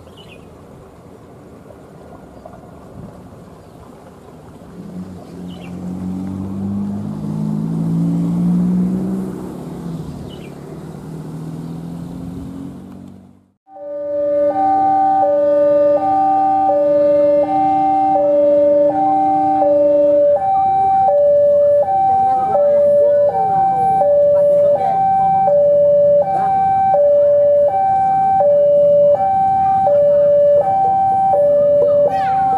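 A diesel locomotive running without carriages approaches, its engine growing louder to a peak about eight seconds in before the sound cuts off. Then a loud electronic two-tone warning alternates high and low, about once every second and a half, with a steady low tone beneath it for its first six seconds.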